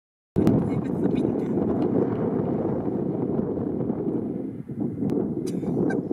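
Steady low rumbling outdoor noise with a few faint scattered clicks, starting abruptly just after the beginning.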